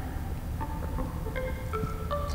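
Eurorack modular synth voiced through a Mutable Instruments Rings resonator module, playing a mallet-like line of short ringing notes at changing pitches over a steady low drone.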